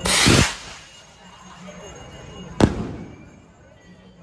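Firework rockets going off: a loud hissing burst of about half a second at the start, then a single sharp bang about two and a half seconds later.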